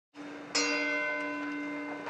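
Church bell tolling: a low hum is already ringing, the bell is struck again about half a second in with a bright, slowly fading ring, and struck once more at the end.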